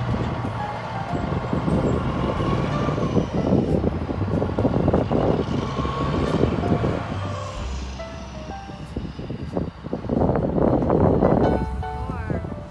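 Diesel engine of a loaded car-carrier semi truck running as it pulls away and drives off down the road, with tyre and road noise. It gets louder again about ten seconds in.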